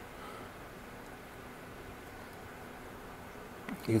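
Steady trickling and splashing of water falling through the holes of a sump drip tray into the water below, with the pump running at full flow.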